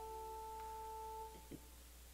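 A soft, sustained instrument note, a pure tone with its octave above, giving the pitch before a chant. It holds for about a second and a quarter, then fades away.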